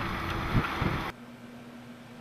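Wind and road noise inside a moving car. It cuts off abruptly about a second in, leaving a faint steady hum.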